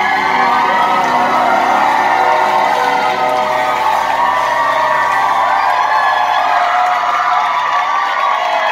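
Concert audience cheering and whooping at the end of a song, with the band's music still sounding underneath until near the end.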